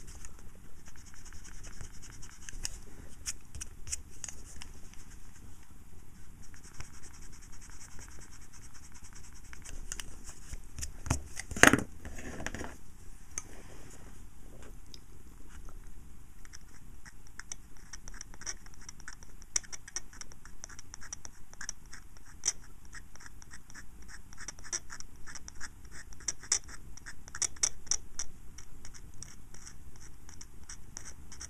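Scalpel blade scraping black paint lettering off a panel meter's scale in runs of fine, rapid scratching strokes. One louder knock sounds about twelve seconds in.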